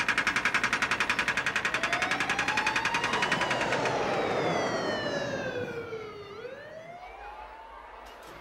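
Jet airplane flying past: a high engine whine with a fast flutter that rises, then glides down in pitch and fades.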